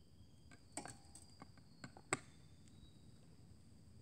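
Fibreglass armour parts clicking and knocking as they are handled, with one sharp click about two seconds in as a side piece snaps onto the chest plate, held by a strong magnet. A faint steady high insect buzz runs underneath.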